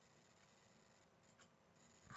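Near silence: faint room tone, with one soft click a little over halfway through.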